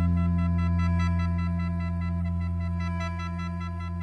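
A single low note on a Spector Euro 5LX five-string electric bass, let ring and slowly fading over a held chord of the song's backing track.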